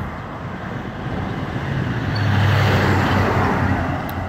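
A road vehicle passing by, its engine hum and tyre noise swelling to a peak about two to three seconds in, then fading.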